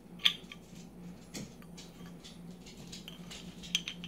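A metal bottle opener clicking and scraping against the crown cap of a glass beer bottle in fumbling attempts to pry it off; the cap does not come free yet. A sharp click about a quarter second in is the loudest, with another near a second and a half and a quick run of clicks near the end.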